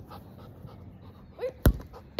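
A dog panting close by in quick, even breaths, with a single sharp thump near the end.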